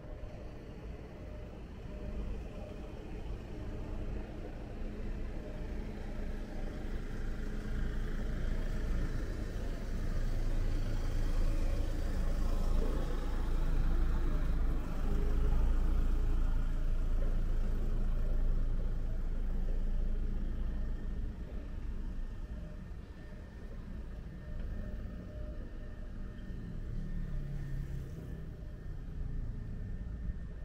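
A motor vehicle's engine running nearby in street traffic, a low rumble that grows louder toward the middle and then fades.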